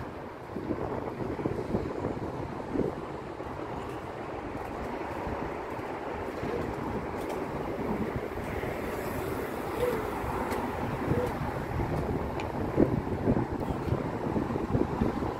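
A strong breeze blowing over the microphone: a steady low rushing wind noise.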